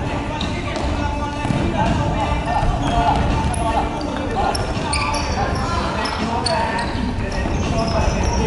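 Indoor futsal play on a wooden sports-hall court: the ball being kicked and bouncing, with players' shouts. Short high sneaker squeaks come mostly in the middle, all echoing in the large hall.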